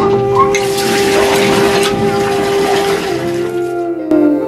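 Water gushing from a hand pump's spout and splashing onto the concrete slab and into an aluminium pot, dying away about three seconds in.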